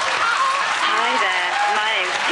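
Studio audience applauding and laughing, with the laughing voices of people close by over it.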